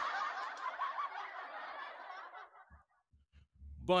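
Laughter that fades away over about two and a half seconds.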